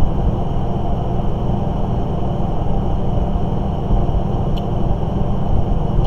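Steady low rumbling background noise, with a faint high whine above it and a faint click about four and a half seconds in.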